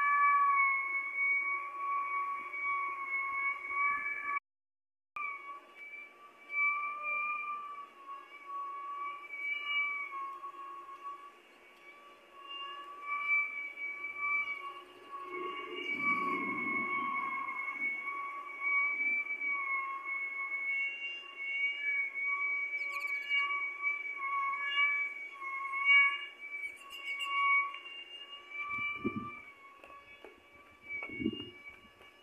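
Strong straight-line winds whistling and howling through a gap, a high two-note whistle that swells and fades with the gusts. The sound drops out completely for a moment about four seconds in, and a low gusty rumble rises briefly about halfway through.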